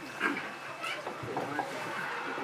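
Faint voices of several people talking quietly in the background, with no one speaking close to the microphone.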